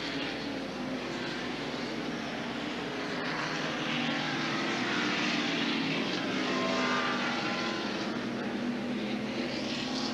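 NASCAR Winston Cup stock cars' V8 engines running at racing speed, several at once, with their pitch shifting as they go through the corners. The sound grows louder toward the middle and eases slightly near the end.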